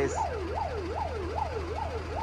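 Ambulance siren in a fast yelp, its pitch sweeping up and down about two and a half times a second, over a steady low engine hum.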